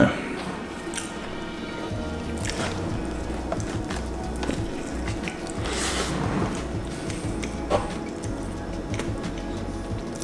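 Background music with a low beat, over the wet, squishy sounds of someone chewing a soft marshmallow-and-chocolate donut, with a couple of louder smacks partway through.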